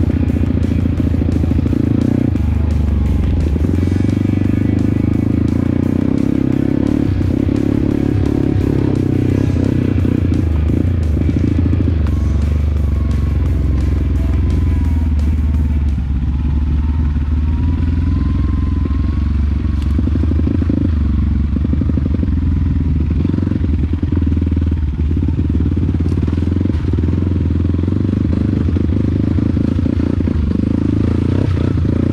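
A trail motorcycle's single-cylinder engine, a Yamaha WR155R, runs continuously as the bike rides a dirt track, with music playing over it.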